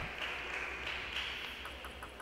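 Quiet sports-hall ambience with a steady hiss. In the second half come faint, quick light taps, about seven a second: a table tennis ball bouncing.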